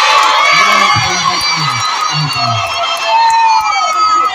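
Large crowd of school students cheering and shouting at once, many high voices overlapping.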